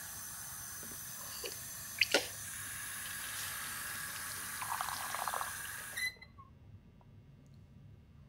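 Water running from a tap and cutting off suddenly about six seconds in, with two sharp clicks about two seconds in and the gurgle of a cup filling shortly before it stops.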